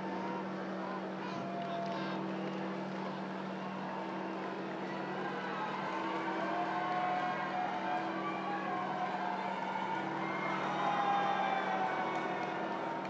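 Steady low hum of the open popemobile driving slowly, with voices of the crowd calling out around it, growing louder from about halfway through.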